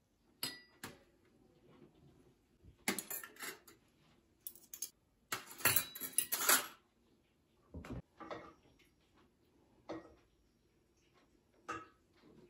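A glass, a spoon and a fork set down on a large stainless-steel serving tray: a series of light metallic clinks and knocks, loudest in a cluster about six seconds in.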